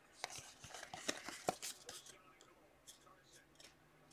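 Faint small clicks and scrapes of 2018 Optic football trading cards being slid and flipped through in the hand, mostly in the first two seconds.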